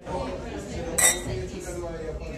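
Stemmed wine glasses clinking together once in a toast, a bright ringing clink about a second in, over background chatter.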